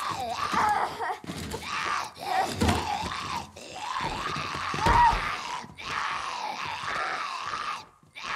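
A girl's strained screams and cries while a zombie grabs at her, over the zombie's groaning growls. Two heavier low thuds of the struggle come a little under three seconds in and about five seconds in.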